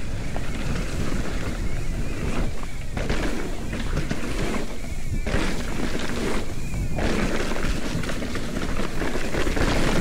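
Mountain bike descending a dirt trail strewn with dry leaves: a steady rush of wind on the camera's microphone, with the rumble of the tyres over the ground.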